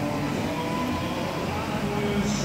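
Steady rush of the Bellagio fountain's water jets spraying, mixed with crowd chatter and the show's music.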